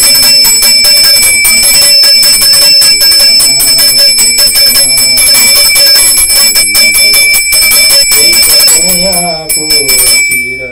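Small brass puja hand bell rung rapidly and without pause, its high ringing tones steady throughout. A man's voice chants over it near the end.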